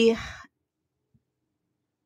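A woman's voice trailing off at the end of a word in the first half second, then dead silence.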